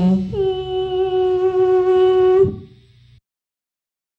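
A human voice holding one long, steady note, just after a lower, wavering note ends. It cuts off suddenly about two and a half seconds in.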